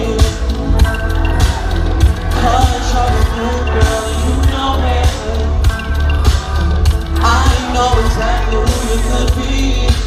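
Live hip-hop concert music heard from within the audience: a heavy bass beat through a large outdoor sound system, with vocals over it, continuous throughout.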